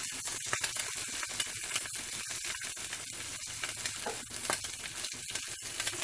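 Two eggs frying in oil in a seasoned cast iron skillet, a steady sizzle.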